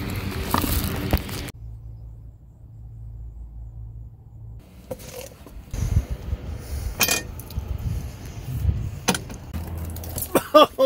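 Handling noise: a hand-held camera rubbing against clothing, with rustling, a few sharp clicks and knocks, and a stretch of muffled low rumble in the first half.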